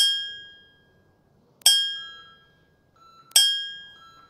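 Three bell-like chime dings, evenly spaced about 1.7 s apart, each struck sharply and then fading. It is the interval timer's signal that the exercise is over and the next one is coming.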